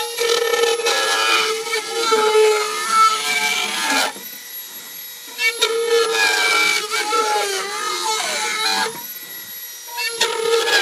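Handheld rotary tool whining at high speed as it cuts into a girandola frame, its pitch wavering as the bit bites and eases. There are two long stretches of cutting, with a short lull about four seconds in.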